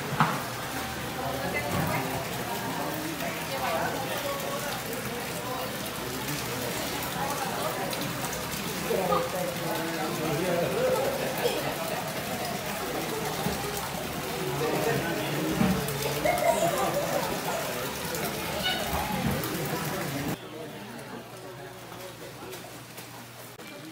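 Indistinct background voices with some music, over a steady hiss; the sound drops quieter shortly before the end.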